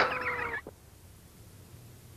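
An animal-like call, a dense rasping sound over a slowly falling tone, that cuts off abruptly just over half a second in, leaving only a faint low hum.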